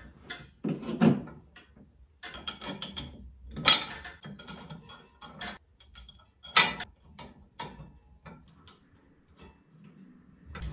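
Steel harrow hardware being fitted: a U-bolt, washers and lock nuts clinking and clanking against the steel bracket as they are put on and tightened with a wrench. Irregular sharp metallic knocks, the loudest about four seconds in and near seven seconds, with lighter clicks toward the end.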